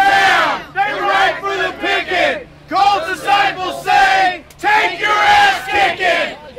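A group of people shouting together in unison, a loud chant in several phrases with short pauses between them.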